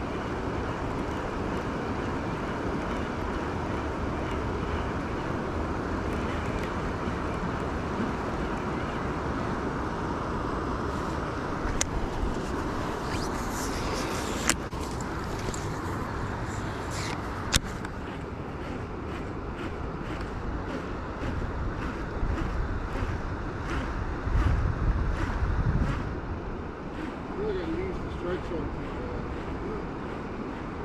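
Steady rushing of water pouring over a river spillway, with a few sharp clicks about halfway through. After about seventeen seconds the rush changes to a different, somewhat quieter outdoor background with a few low rumbles.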